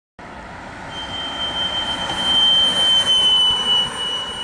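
A car drives past with a single high, steady note sounding from it, over rising and falling road noise. The note drops slightly in pitch as the car passes, which is the Doppler effect.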